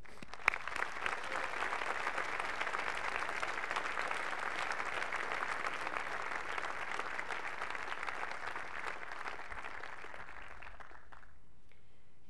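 Audience applauding: a dense patter of many hands clapping that starts about half a second in, holds steady, and dies away over the last couple of seconds.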